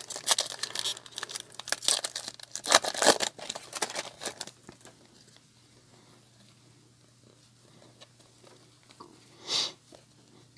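Foil wrapper of a football trading-card pack torn open and crinkled in the hands for about four and a half seconds, then quiet as the cards are taken out, with one short swish near the end.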